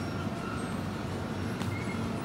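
Steady low hum of a supermarket's refrigerated display cases, with a faint even hiss of store noise over it.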